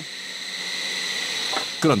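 Stone-hollowing machine grinding out the inside of a soapstone bowl blank: a steady high-pitched whine over a hiss, slowly getting louder.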